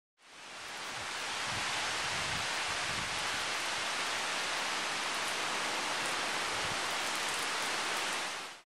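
Steady rain falling on leafy trees: an even hiss that fades in over about the first second and then holds steady.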